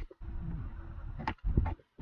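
Plastic glove box of a 2004 Mitsubishi Lancer ES being worked free of its side stops by hand: rubbing and creaking of the plastic, then a few sharp clicks about a second and a half in as the stops pop free and the box drops open.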